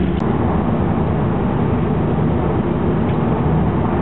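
A 1971 Chevrolet C10 pickup driving at a steady pace: its engine runs evenly under road noise, heard from inside the cab.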